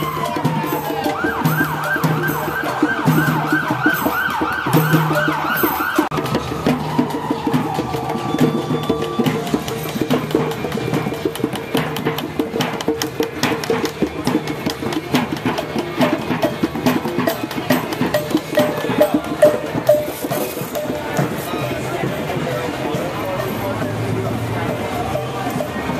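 A siren winding down, switching to a fast, even yelp for about four seconds, then falling away and fading out over the noise of a crowd on foot. Through the second half come many sharp clicks and taps over the crowd noise.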